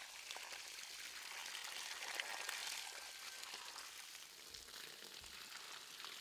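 Water running out of a pipe onto garden soil and flowing along the furrows between rows of seedlings: a faint, steady splashing trickle.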